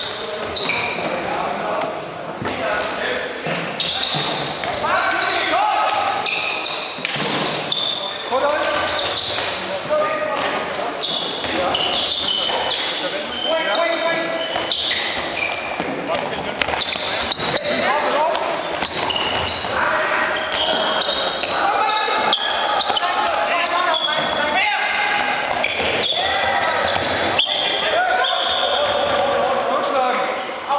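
Floorball match play in a large gym hall. Plastic sticks clack against the hollow plastic ball and the floor, with many sharp knocks throughout. Shoes squeak on the gym floor and players call out.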